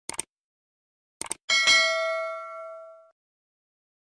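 Subscribe-button animation sound effect: two quick mouse clicks, another pair of clicks about a second later, then a single notification-bell ding that rings out and fades over about a second and a half.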